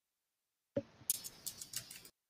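A low bump, then a quick run of about six sharp clicks, heard through a video-call microphone that opens briefly and cuts off abruptly.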